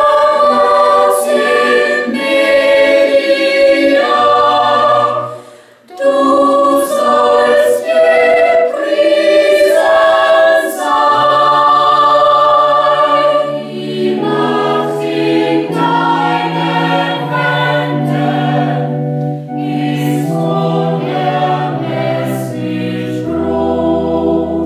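Mixed choir singing a sustained passage in several parts, breaking off briefly about five seconds in and then resuming. A low held bass line comes in at about eleven seconds.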